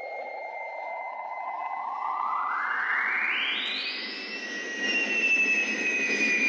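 Synthesized sound effect for flight through the air: a hissing sweep that rises steadily in pitch for about four and a half seconds and then holds, under a steady high electronic tone.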